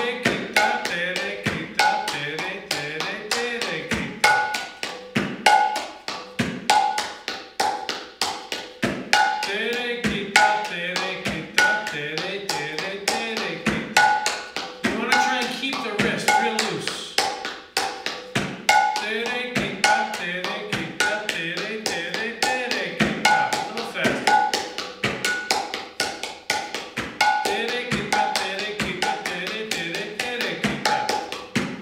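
Mridanga, the Bengali barrel drum of kirtan, played with both hands in a fast, steady, repeating rhythm: ringing strokes on the small head and deep, bending strokes on the big head. It is a te re khe ta practice pattern, looped over and over.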